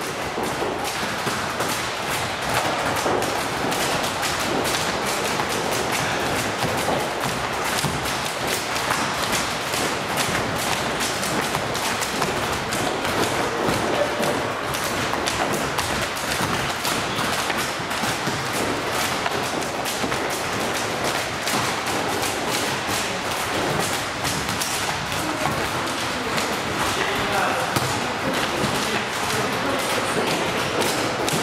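Volleyballs being struck with the hands and bouncing on a wooden gym floor: many dull thuds and slaps in quick, irregular succession from several balls at once, over indistinct voices.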